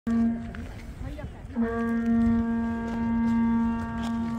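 A traditional Korean ceremonial horn sounding one steady pitch: a short blast at the very start, then a long held note from about one and a half seconds in.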